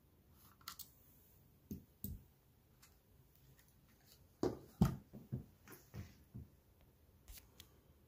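Light clicks and knocks of a plastic DJI Mavic Air 2 drone and a small screwdriver being handled: a few isolated clicks, then a denser run of taps and thumps from about four and a half to six and a half seconds in.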